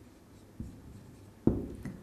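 Marker pen writing on a whiteboard: a few short, soft strokes, with a sharper tap about one and a half seconds in.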